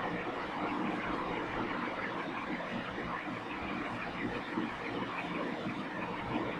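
Steady background noise with no distinct events, a continuous even rush in the room or recording.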